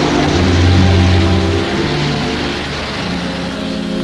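Background film score of low held notes that shift pitch every second or so, over the heavy hiss of an old soundtrack.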